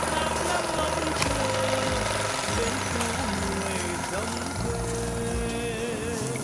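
Motorbike engine running steadily, mixed under background music.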